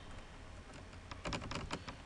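Computer keyboard typing: a few scattered keystrokes, then a quick run of them in the second half.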